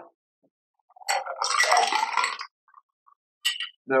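Ice clinking in a metal cocktail shaker tin as the shaken drink is poured into a glass, starting about a second in and lasting about a second and a half, with one more brief clink shortly before the end.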